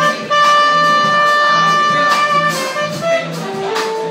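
Live jazz band with a horn solo: the horn holds one long note for about two seconds, then plays a few shorter notes over a steady bass line.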